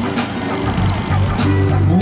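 A live band playing a song between the singer's lines, with steady low notes underneath.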